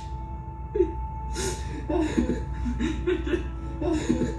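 A film soundtrack playing through a room's loudspeakers: held music notes under a man's short bursts of laughter.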